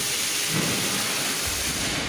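Steady, loud rushing hiss of workshop noise filling a large factory shed under an overhead crane, with no single distinct machine sound standing out.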